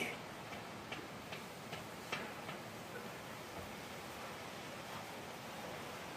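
Faint steady background hiss with a run of light ticks, about two and a half a second, that stops after a couple of seconds.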